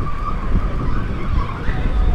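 Motor scooter riding along a city street: the engine running under heavy wind rumble on the microphone, with a thin wavering whine through it.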